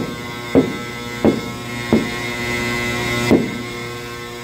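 Knocks on the steel side of a horizontal cement silo pod, five in all at uneven spacing, each with a hollow ringing echo that shows the pod is nearly empty. A steady mechanical hum runs underneath.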